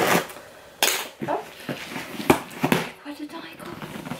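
Scissors snipping through packing tape on a cardboard box, a few sharp clicks and cardboard rustles as the box is cut open.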